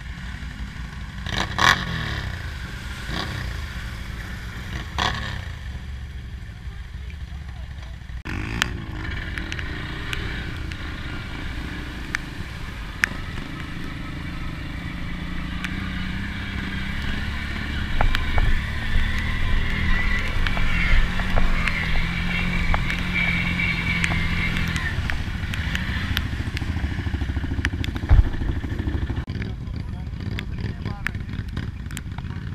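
ATV engines running as quads drive through flooded trail water, with water splashing and churning around them and a few sharp knocks. The sound changes abruptly about eight seconds in, and a steadier engine drone holds from about the middle until near the end.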